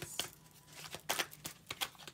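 A deck of oracle cards being shuffled by hand, with a handful of irregular sharp clicks and snaps as the cards strike one another.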